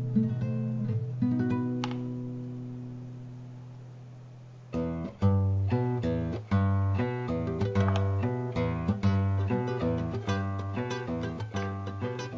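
Background acoustic guitar music. A held chord fades out over the first few seconds, then quick plucked notes start again about five seconds in.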